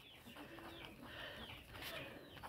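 Faint scratching of a pen writing a word on notebook paper.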